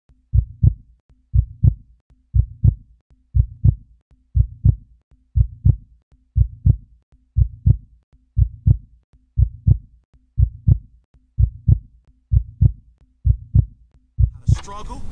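Heartbeat sound, slow and steady: a low double thump, lub-dub, about once a second, fourteen beats in a row.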